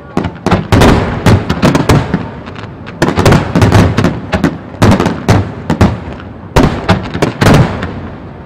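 Japanese star mine fireworks barrage: many aerial shells bursting in rapid volleys, sharp bangs bunched close together, each trailing a low rumble.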